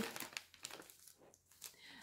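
Faint crinkling and rustling of parcel packaging being handled, busiest in the first half-second, then a few soft scattered ticks.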